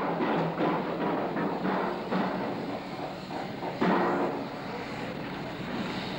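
Steam-powered rapid-blow pile hammer running: a steady hiss of steam with irregular knocks, getting louder about four seconds in.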